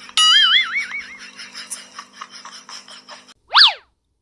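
A cartoon "boing" sound effect with a wobbling pitch, loud and fading over about a second. Near the end comes a quick up-and-down whistling swoop, a transition effect.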